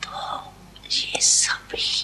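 Breathy, whispered speech sounds from a woman close to a microphone: a soft breath, then hissing 's'- and 'sh'-like sounds about a second in and again near the end, with no voiced words.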